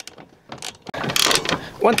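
A ratchet wrench clicking as a mounting bolt is tightened on a tractor suspension seat's frame: a few light clicks at first, then a dense run of ratcheting in the second half.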